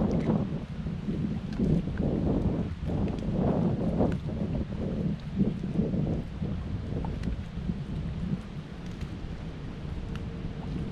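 Wind buffeting the camera microphone: an uneven rumble that gusts louder and softer, with a few faint ticks.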